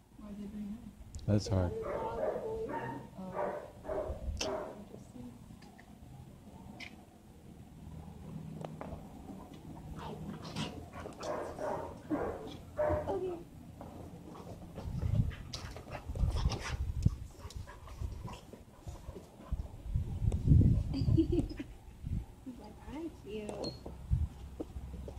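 Dogs playing, with brief dog vocal sounds, under indistinct voices of people talking. Low rumbles come twice in the second half.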